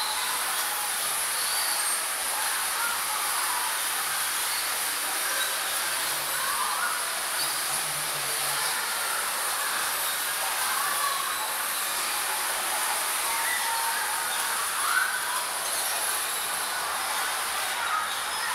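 Electric bumper cars running on a metal-floored rink: a steady hissing rumble of motors, wheels and the overhead pole pickups on the ceiling grid, with one brief sharp knock late on.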